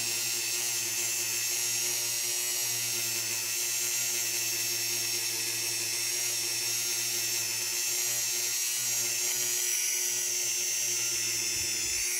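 Dremel rotary tool running at a steady speed with a buffing wheel and fine compound, polishing guitar frets: an even, unbroken whine.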